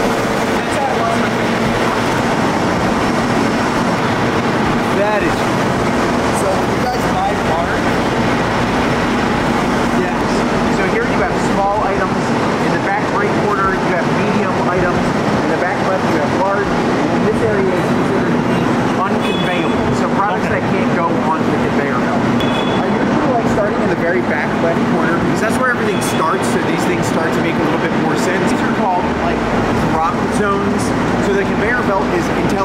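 Steady mechanical din of a distribution warehouse's conveyor system and machinery, with a continuous low hum and indistinct voices mixed in.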